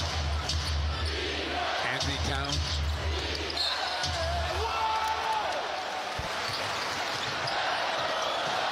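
A basketball being dribbled on a hardwood court over steady arena crowd noise, with voices in the background.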